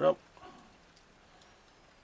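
A word of speech at the very start, then near quiet with a few faint light clicks of fingers handling and setting upright a small glued card model on a cutting mat.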